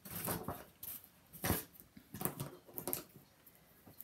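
Paper and craft tools being handled on a cutting mat: several short rustles and scrapes, with a sharper knock about halfway through.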